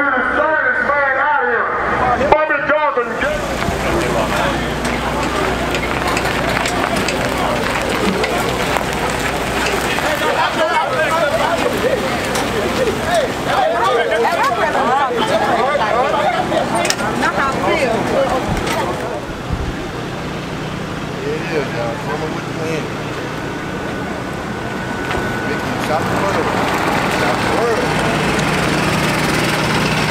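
Several people talking and chattering over one another, with a steady low engine hum underneath.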